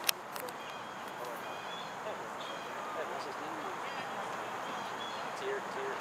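Distant voices calling across an open soccer field over steady outdoor background noise, with one sharp click just after the start.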